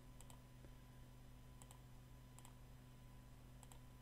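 Near silence with a low steady hum, broken by a few faint, sharp computer-mouse clicks spaced irregularly: the clicks of placing points with a polygonal lasso selection.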